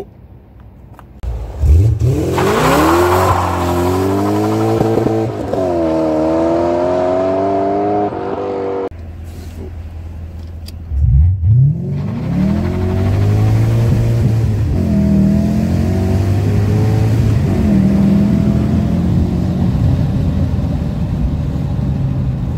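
BMW M5 E39's 5-litre S62 V8, fitted with a Supersprint X-pipe exhaust, revving up with the pitch climbing over several seconds. After a cut near the middle, it accelerates hard from inside the cabin, the pitch rising and dropping back twice as it shifts up.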